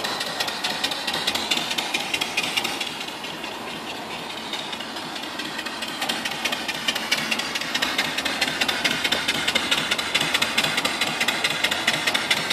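Homemade single-cylinder vertical steam engine (3-inch bore, 3-inch stroke) running smoothly under steam, its rapid, even exhaust beats over a steady hiss of escaping steam.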